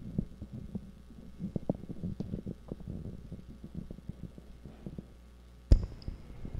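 Handling noise from a handheld microphone as it is passed from hand to hand: irregular low rubbing and bumping, with one sharp thump near the end.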